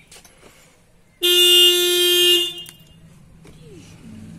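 A vehicle's horn, pressed at the steering wheel hub, sounds once as a steady single-pitched honk lasting about a second and a half.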